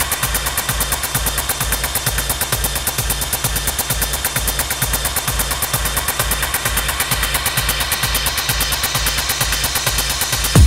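Techno in a breakdown: a fast, even stutter of noisy percussive hits over a pulsing bass, without the full beat.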